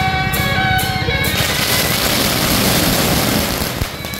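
A string of firecrackers crackling rapidly from about a second and a half in until just before the end, drowning out the procession music. Before it, the waijiang (Beijing-opera-style) procession band is heard playing a melody over steady percussion.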